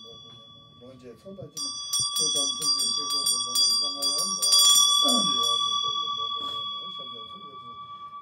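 Tibetan ritual hand bell (drilbu) shaken in a quick run of clapper strikes from about a second and a half in to about five seconds, with the strokes crowding together near the end of the run. It is then left ringing with a steady tone that slowly fades. A woman's voice recites over it.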